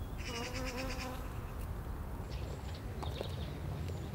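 A bee buzzing in flight: a wavering pitched hum during about the first second that then fades, leaving a faint steady background.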